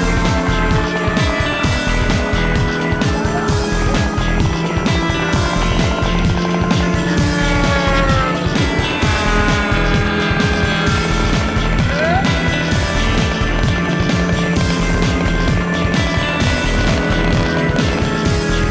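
Rock music with a steady beat, with a quarter-scale racing model plane's engine passing at high speed over it, its pitch falling as it goes by at the start and again about eight seconds in.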